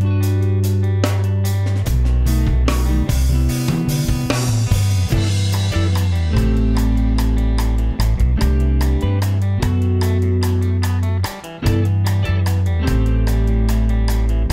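Electric guitar played through a DSP virtual amp model over a full band track of drums and bass guitar, with a steady beat. There is a brief break about eleven seconds in.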